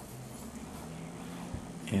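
Quiet handling of a plastic collectible action figure, with one soft click about one and a half seconds in.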